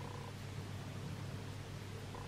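A steady low hum under faint room tone. The crochet work itself makes no clear sound.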